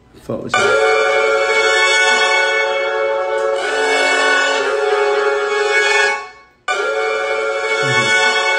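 A melodic sample loop of sustained, layered instrument tones playing back from studio speakers, with the chord changing about halfway through. It stops abruptly about six seconds in and starts again half a second later, as the loop is restarted.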